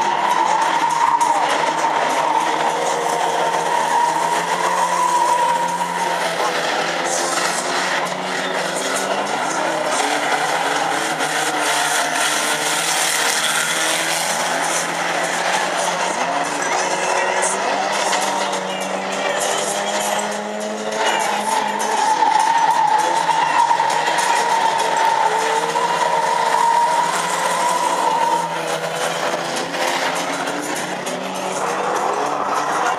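Banger racing cars' engines running and revving on the track, with a steady high-pitched whine during the first six seconds and again for several seconds after about twenty seconds in.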